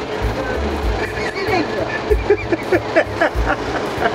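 A voice speaking Korean in short phrases over background music with a low beat.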